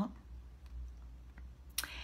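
A pause in a woman's speech: room tone with a faint steady low hum, then a single sharp mouth click near the end as she opens her mouth to speak again.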